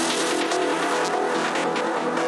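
Psytrance music in a breakdown: many gliding, sweeping synth lines and ticking high percussion, with no kick drum or bass.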